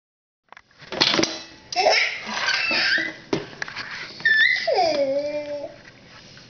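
Baby giggling and laughing, with a few sharp knocks as a plastic ketchup bottle topples onto a wooden table. A drawn-out voiced call comes near the end.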